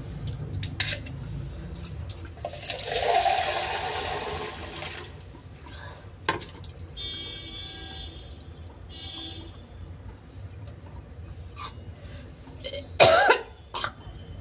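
A woman gagging and retching while scraping her tongue with a wire tongue cleaner, with foamy spitting. There is a long gagging sound a few seconds in and a sharp, loud retch near the end.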